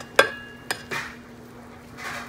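A spoon knocks and scrapes against the inside of a rice cooker's pot while rice and pigeon peas are being stirred. There are three sharp clicks: the loudest comes about a quarter second in and rings briefly, and two lighter ones follow within the first second. A faint steady hum runs underneath.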